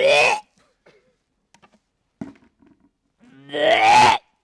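A woman's voice in two loud outbursts without words, a short one at the start and a longer one with rising pitch near the end, with near silence and a few faint clicks between.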